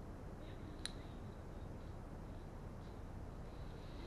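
Faint room hum with one sharp click about a second in, from the volume switch on a Hysnox HY-01S Bluetooth helmet headset being worked, and a faint thin high tone from the headset's speaker around the same time.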